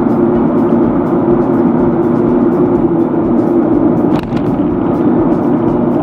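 Steady background music with long held tones over the road and engine noise of a moving car heard from inside the cabin, with a single sharp click about four seconds in.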